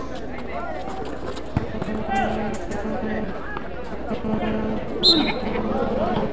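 Distant voices of players and onlookers calling out, with one sharp thud of the ecuavóley ball being struck about one and a half seconds in.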